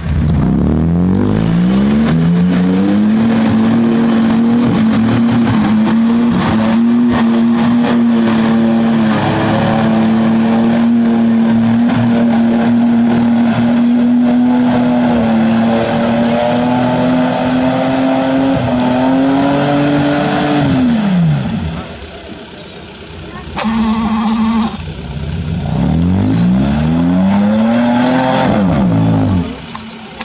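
An off-road 4x4's engine revving up and held at high revs for about twenty seconds while driving through a deep mud pit, then dropping away. After a short lull it revs up and falls again near the end.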